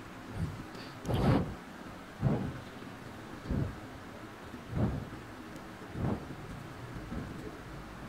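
Soft rustles and low rubbing thumps of a crocheted cotton mat and yarn being handled while a yarn tail is worked through the stitches with a crochet hook: five or six short bursts, roughly a second apart.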